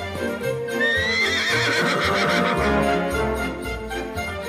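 A horse whinnies over music: one high call that starts about a second in, rises, then wavers and falls away.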